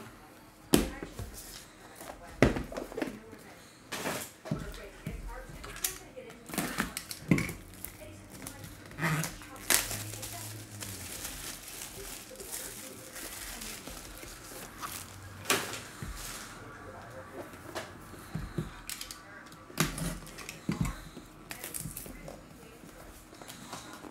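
Hands handling trading-card packaging: scattered sharp clicks and knocks of a plastic card holder and a cardboard box, with cellophane shrink wrap crinkling as it is torn off the box, then the box lid being lifted.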